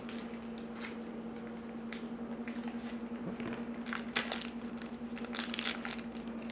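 Light crinkling and rustling of a trading-card pack and cards being handled, in short scattered bursts, busiest about four seconds in and again near the end, over a steady low hum.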